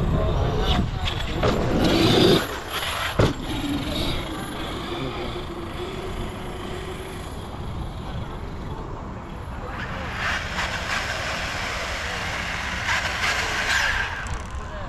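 Wind buffeting the camera microphone over the motor and tyre noise of large-scale electric RC trucks on dirt, with a sharp knock about three seconds in.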